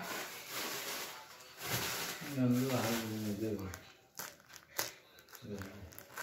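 Plastic courier mailer crinkling as it is handled and cut open with scissors, with a few sharp snipping clicks near the end.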